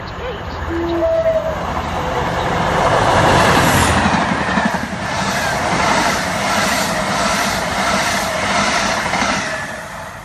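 Class 47 diesel locomotive 47830 passing close by, its Sulzer twelve-cylinder engine swelling to its loudest about three or four seconds in. A string of passenger coaches follows, rolling past with a regular clatter of wheels over the rail joints that fades near the end.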